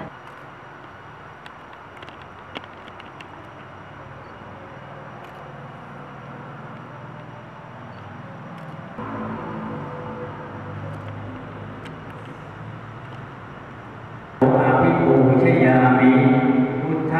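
Low background noise of people gathered in a temple hall. Near the end it gives way abruptly to loud group Buddhist chanting in unison, steady and sustained.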